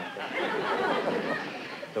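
Studio audience laughing at a joke, the crowd of voices slowly dying down.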